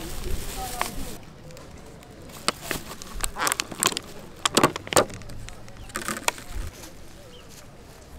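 Thin plastic bag and clear plastic takeaway container crinkling and crackling as they are handled and the lid is pulled open, in clusters of short crackles, loudest about four and a half to five seconds in.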